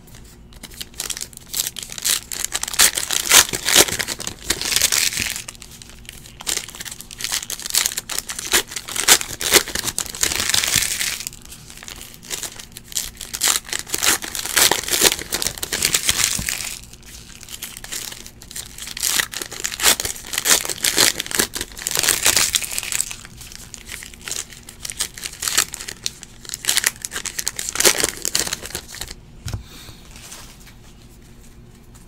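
Stack of cardboard trading cards flipped through and sorted by hand: rapid rustling and card-edge clicks in about five bursts of a few seconds each, with short pauses between.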